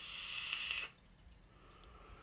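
A draw on a vape mod: a soft hiss of air pulled through the atomizer that stops just under a second in.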